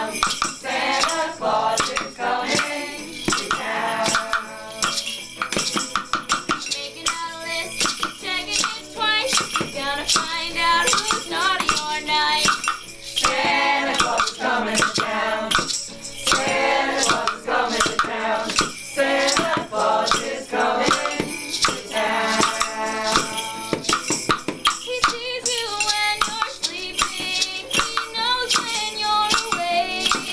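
A group singing together over strummed ukulele and guitar, with shaken hand percussion keeping a steady beat.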